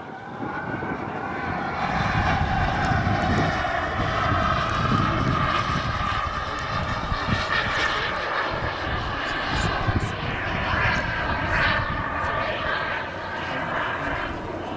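Turbine jet engine of a giant-scale radio-controlled F-15 Eagle model jet in flight: a jet rush with a high whine on top. It grows louder over the first two seconds, then holds steady while the whine's pitch slowly wavers.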